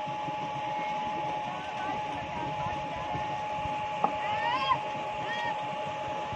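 Steady motor drone with a constant whine, with a single sharp click about four seconds in.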